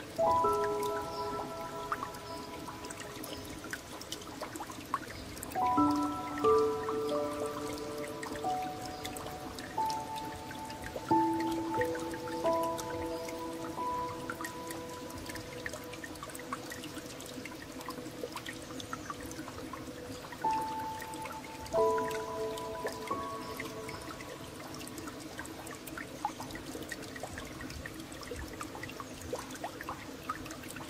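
Slow, gentle solo piano playing sparse chords and held single notes, a few struck together every several seconds and left to ring, over a steady background of trickling, dripping water.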